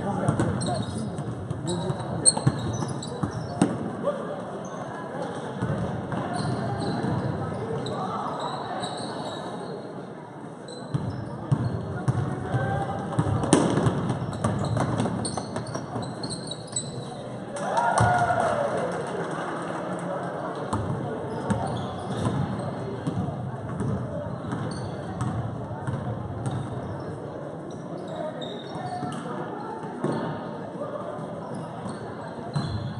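Basketball game sounds in a gym: a ball bouncing on the hardwood court in repeated knocks, with voices of players and spectators calling out around it.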